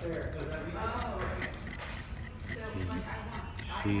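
A knife blade scraping and cutting into a block of compacted sand, in a quick run of short scrapes.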